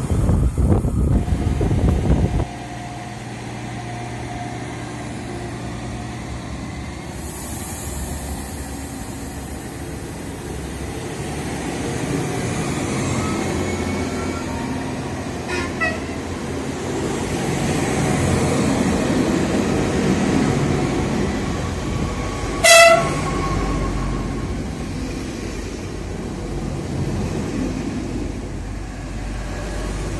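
Tail of a freight train rumbling past, cutting off suddenly about two seconds in. Then electric regional trains run through the station with a steady rumble that swells and fades. There is a faint short horn toot about halfway, and a loud short train horn blast about three-quarters of the way through.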